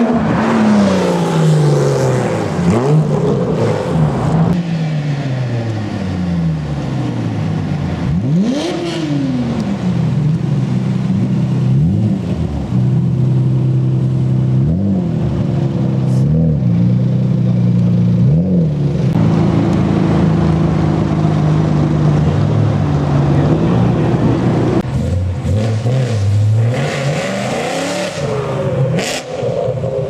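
Performance car engines revving and accelerating away one after another, the pitch climbing and dropping through gear changes. In the middle an engine holds a steady note with short rev blips, and there are sharp cracks about halfway and near the end.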